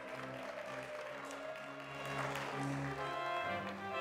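Organ music playing long held chords, changing to a new chord about three and a half seconds in.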